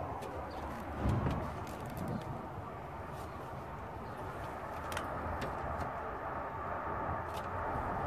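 Quiet, steady outdoor background noise with a few faint clicks and a soft thump about a second in.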